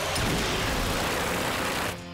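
Cartoon battle sound effect: a loud, steady rush of noise with a low rumble, like a fiery blast or explosion, that cuts off abruptly at the end.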